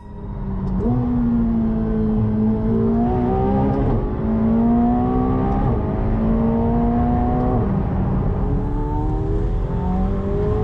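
Sports car engine accelerating hard through the gears, heard from inside the cabin. Its pitch climbs steadily in each gear and drops sharply at each upshift, about every two seconds. It eases off briefly after the last upshift before pulling again near the end.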